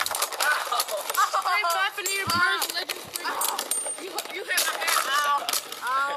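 Beyblade spinning tops battling in a plastic stadium just after launch, with many sharp clicks as they clash, under children's excited shouting and chatter.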